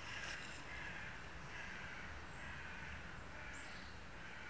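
Crows cawing, a run of short calls one after another, with a brief high falling bird note near the end.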